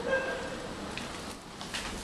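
Inside an Otis Gen2 lift car: a brief tone right at the start, then a steady low hum with a single click about a second in.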